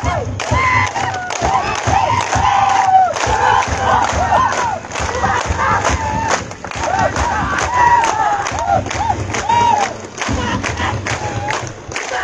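A huge outdoor crowd cheering and shouting, many voices overlapping into one loud, sustained roar that eases briefly near the end.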